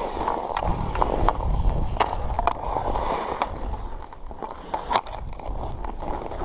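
Ice-skate blades scraping and carving on outdoor rink ice, with scattered sharp clacks of hockey sticks on the puck and ice.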